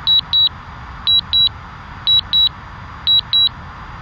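DJI drone remote controller beeping a high double beep about once a second, over a steady hiss: the return-to-home alert sounding while the drone descends to land.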